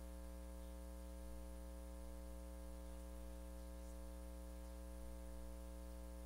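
Faint, steady electrical hum and buzz, with no change and no other sound.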